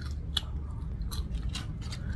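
A person chewing french fries close to the microphone, with a few short, sharp wet mouth clicks and smacks.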